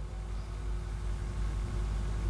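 Steady low rumble with a faint constant hum and no speech.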